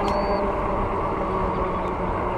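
Steady rush of wind and tyre hum from a fat-tire e-bike riding on asphalt at about 22 mph, with a faint even hum underneath. A brief high-pitched chirp sounds just after the start.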